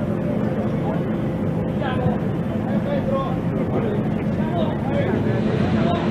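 Inflation fans running steadily, a continuous low machine hum, as they blow air into a pneumatic rescue jump cushion that is filling up.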